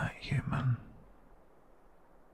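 A man's brief, soft whispered murmur in the first second, then only faint background hiss.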